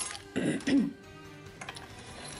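A person's short cough, clearing the throat in two quick bursts about half a second in. Soft background music plays underneath.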